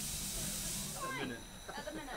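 Steam hissing steadily from a stationary Peckett B3 0-6-0 saddle tank steam locomotive, cutting off suddenly about a second in, after which voices are heard.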